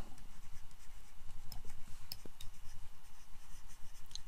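Faint pen strokes on a writing surface: light scratching with a few small ticks as words are written out.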